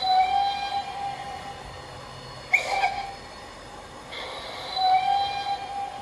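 Locomotive whistle sounding: a long blast right at the start, a sudden sharp sound with a short toot about two and a half seconds in, and another long blast about five seconds in.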